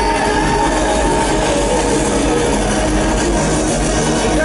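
Loud live stadium concert music led by an acoustic guitar, heard from within the audience as a steady, dense wash of sound.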